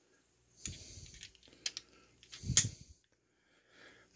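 Steel screwdriver bits and shank clicking and rattling as they are handled and fitted into the handle of a PicQuic multi-bit screwdriver: a soft rustle, two quick sharp clicks near the middle, then a louder click.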